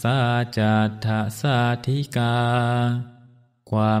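A Theravada Buddhist monk chanting Pali verses in a low, steady monotone, in short held phrases. The chanting stops about three seconds in, and after a half-second silence his voice resumes near the end.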